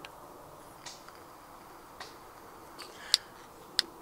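E-cigarette being drawn on and the vapour breathed out: a faint, steady hiss with a few soft clicks and two sharper clicks near the end.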